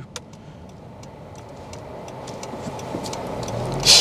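Car interior noise while driving: steady engine and road hum that grows gradually louder, with faint light ticks and a low engine note rising near the end.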